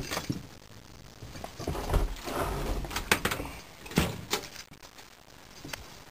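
Front-door knob lock and keys: a few sharp clicks and knocks of door hardware, with a stretch of low rumbling noise in between.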